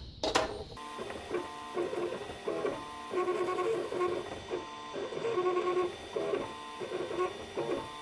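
Cube 3 3D printer printing: its motors sing in short pitched spurts of about half a second to a second that change in pitch as the print head moves. The printer is running again with the repaired cartridge, its jam cleared.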